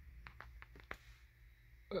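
A few faint, light clicks in the first second, from the plastic shift-gate trim and brush cover being handled and fitted around an automatic gear selector. A low steady hum runs underneath.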